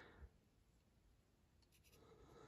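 Near silence: room tone, with a faint short tap about a quarter-second in and a few very faint ticks near the end.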